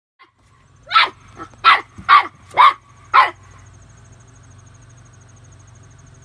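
Boxer puppy barking at an unfamiliar garden hose: five sharp barks in quick succession, about half a second apart, in the first few seconds.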